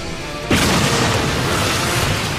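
Anime sound effect of a Rasengan blast: a sudden loud boom about half a second in, carrying on as a long rush of noise, with music underneath.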